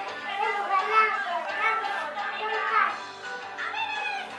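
A young girl's voice over music playing in the background.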